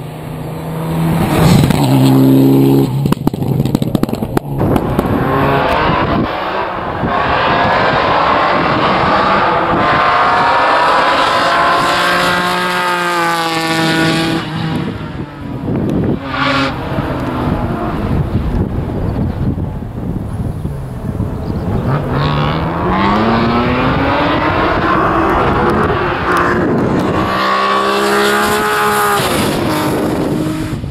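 Rally cars driving flat out on a closed stage, engines revving hard through the gears, the pitch climbing with each acceleration, dropping at the shifts and braking, and rising again as the next car approaches. A single sharp crack comes about halfway through.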